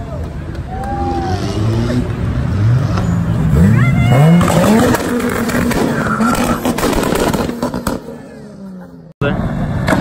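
Toyota Supra (Mk4) engine revving as the car accelerates away, its pitch climbing in steps about three to four seconds in. The sound fades near the end, over crowd chatter.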